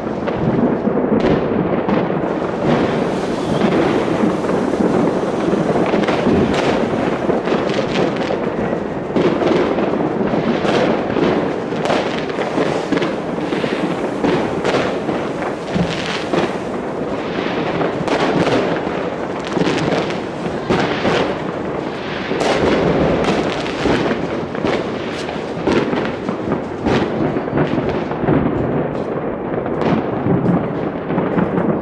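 New Year fireworks going off without a break, a dense run of bangs and crackles one after another.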